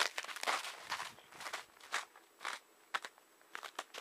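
Footsteps crunching in snow at about two steps a second, fading near the end as the walker moves away.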